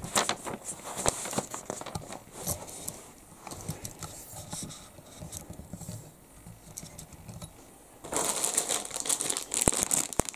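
Light handling rustles, then from about eight seconds in the loud crinkling of a clear plastic bag holding a plastic model-kit sprue as it is lifted out of the box and handled.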